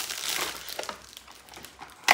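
Gift wrapping crinkling and rustling as presents are pulled from a paper gift bag and unwrapped by hand. The rustling is busiest in the first second and thins out after that.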